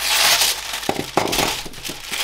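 Sheet of tissue paper rustling and crinkling as hands spread and smooth it, with a few sharper crackles about a second in.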